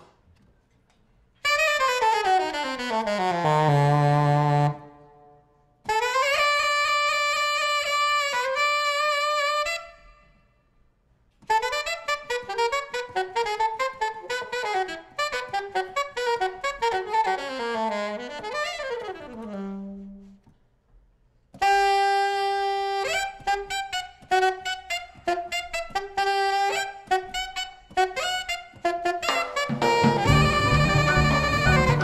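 Unaccompanied jazz alto saxophone playing in four phrases split by short silences: a long downward glide, a held note that bends up into pitch, a fast run of notes ending in a dip to a low note, then a string of short repeated notes.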